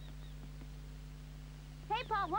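A quiet, steady low hum with a faint, evenly repeating high chirp like crickets behind it. Right at the end a wavering, animal-like call begins.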